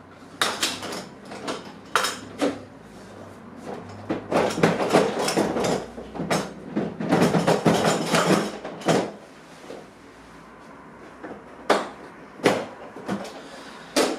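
Hard plastic clicks, knocks and rattles from a Husky Connect stacking tool box as the grey latches are worked and the top organizer box is unlatched and lifted off the stack. A busy stretch of rattling and scraping in the middle, then a few single sharp clicks near the end.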